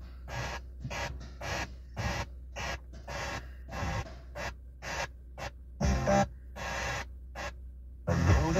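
Car radio being tuned by turning its knob through FM stations: short snatches of broadcast audio, two or three a second, each cut off by silence between stations, with a slightly longer snatch near six seconds. A steady low hum runs underneath.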